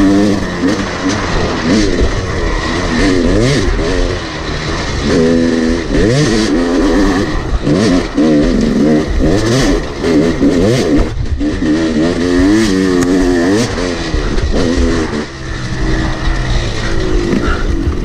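Yamaha YZ250 two-stroke single-cylinder engine ridden hard, heard from on the bike, its pitch climbing and dropping again and again as the throttle is opened and closed through the trail.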